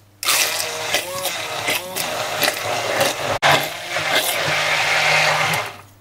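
Hand-held immersion blender running in its tall beaker, puréeing basil leaves in olive oil. It starts about a quarter second in, cuts out for an instant a little past halfway, and stops just before the end.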